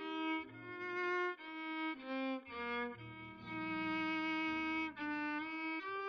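Violin playing a slow melody of held, bowed notes that move from one pitch to the next about every half second to a second, over low sustained accompaniment notes.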